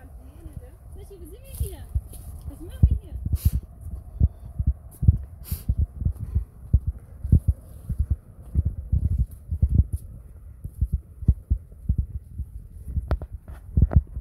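Irregular low thumps and rumbling on the camera microphone while it is carried at a walk, from handling, footfalls and wind. A few short rustles sound through them, and faint voices are heard in the first few seconds.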